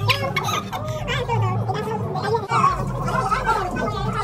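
A woman laughing over background music with a steady bass line.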